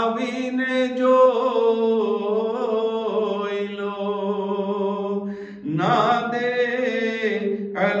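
A man singing a Gujarati manqabat, a devotional poem, into a microphone, drawing out long ornamented vowels. He breaks off briefly about five seconds in, then starts a new phrase.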